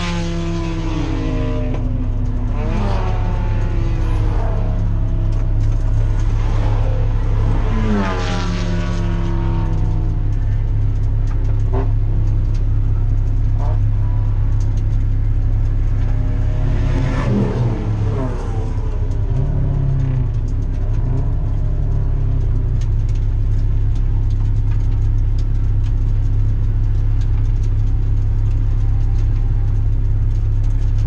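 Cabin sound of a Mazda Miata race car's four-cylinder engine holding a steady low drone as the car creeps along without acceleration after a throttle cable problem. Other race cars pass several times, their engine notes sweeping past and falling in pitch.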